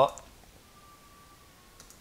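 A near-quiet pause with a faint computer mouse click near the end, just after a man's voice trails off at the start.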